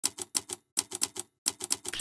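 Typewriter key clicks, a typing sound effect: three quick runs of five or six sharp strikes each, separated by short pauses.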